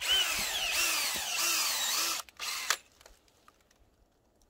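Cordless drill boring a sap-tapping hole into a mono maple (gorosoe) trunk: a loud motor whine whose pitch dips and recovers over and over as the bit bites, for about two seconds, then a second short burst before it stops.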